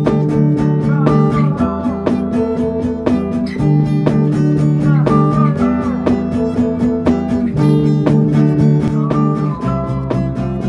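Instrumental guitar music: a strummed acoustic guitar keeping a steady rhythm, with a lead guitar line whose notes bend up and down.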